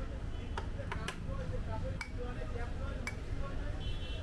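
Busy street ambience: a steady low traffic rumble and background voices, with about five sharp, irregular ticks of metal utensils at the street-food cart.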